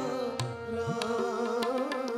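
Sikh kirtan accompaniment: a harmonium holds sustained chords while a tabla plays a steady rhythm, its bass drum notes bending upward in pitch.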